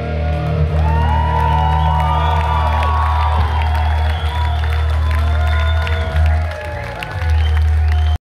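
Live rock band on the PA holding out the end of a song: low bass notes sustained throughout, with high sliding notes over them from about a second in.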